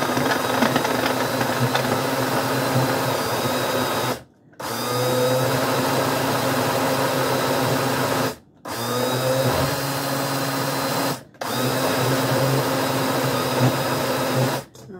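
Single-serve personal blender running as it blends a strawberry smoothie. The motor runs in four steady spells, stopping briefly about four, eight and a half and eleven seconds in, as the jar is pressed down and let up.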